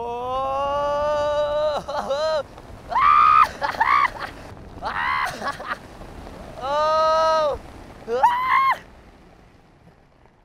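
A person whooping and yelling wordless high "ooh" calls. A long rising call is held for almost two seconds, then comes a string of shorter calls, with one more long call about seven seconds in.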